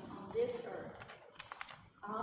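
A short snatch of a person's voice about half a second in, then a few light clicks or taps near the middle.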